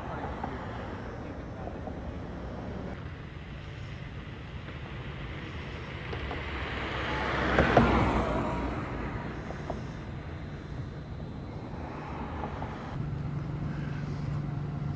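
A car passing close by, its engine and tyre noise building to a peak about eight seconds in, then fading away, over a steady low street rumble.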